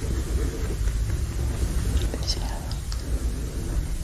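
A woman whispering softly, over a steady low rumble, with a few faint ticks about two seconds in.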